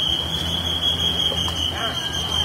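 A single steady high-pitched tone, held without a break or change in pitch, with faint voices near the end.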